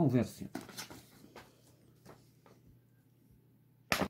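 A voice trails off at the start, then a quiet pause with a few faint soft taps of pen-and-paper handling, and one sharp click just before the end.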